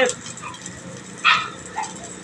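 Burger patties sizzling steadily on a flat-top griddle, with two short sharp sounds cutting in about a second and a half in.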